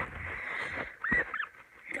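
Guinea pig squeaking: a couple of short, high squeaks a little over a second in.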